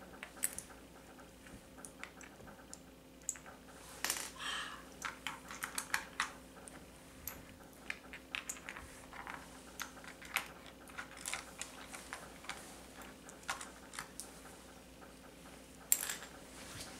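Small plastic game pieces clicking and tapping against each other and the tabletop as they are picked up with magnet-tipped wands. The taps are light and irregular, busiest from about four to six seconds in.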